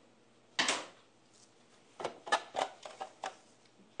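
A knife slicing a red onion into rings on a wooden cutting board: a quick run of about six light clicks, roughly three a second, as the blade meets the board. They follow a single brief brushing knock about half a second in.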